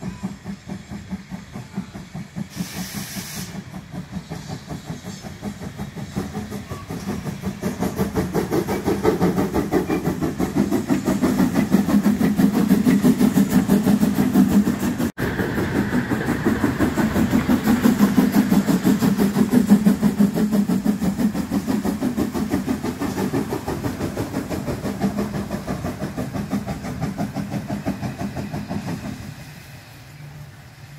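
Narrow-gauge steam train passing close by, its wheels clattering rhythmically over the rail joints. The sound builds up, is loudest in the middle and dies away near the end, with a short hiss of steam about three seconds in.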